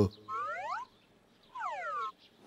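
Cartoon sound effect: a short whistle-like tone gliding upward in pitch, then, about a second later, a matching tone gliding downward.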